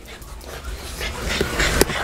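French bulldogs panting, the breathing growing louder over the two seconds, over a low rumble of camera handling, with a couple of short clicks in the second half.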